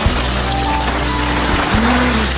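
Background music: an instrumental passage with long held notes over a steady bass.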